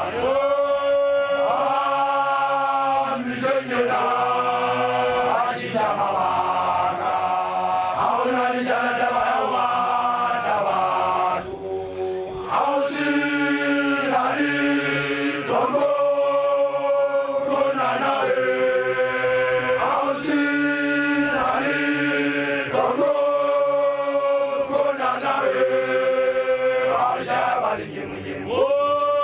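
Basotho initiates (makoloane) chanting together in many voices, holding long notes in phrase after phrase, with a short break a little under halfway through.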